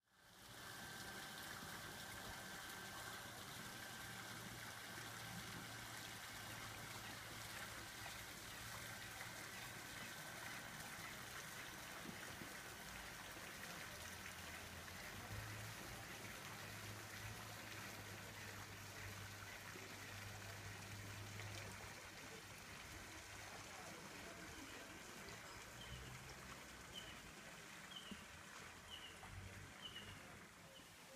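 Faint, steady trickle of water with a low hum under it. A few short, high chirps come about a second apart near the end.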